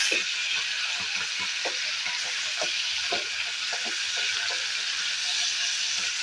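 Dried fish sizzling steadily as it fries in hot oil in a non-stick kadai, with scattered light ticks as a spatula stirs it.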